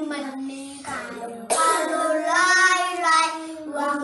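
A small group of young kindergarten children singing a song together in Fijian, without instruments, with a short pause about a second in before a louder phrase.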